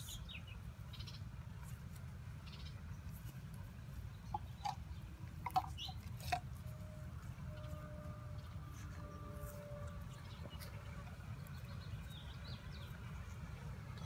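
Quiet outdoor ambience: a steady low rumble with a few short, faint chirps a little before the middle, followed by faint held tones.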